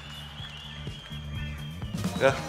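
Background music at moderate level: low sustained notes under a thin, high held tone that fades out near the end.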